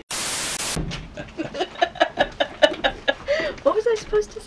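A burst of TV-static hiss, a video transition effect lasting under a second, cuts off sharply and is followed by a woman talking.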